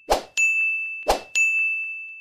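Edited sound effects: twice, about a second apart, a short noisy hit is followed by a bright bell-like ding that rings on and fades slowly.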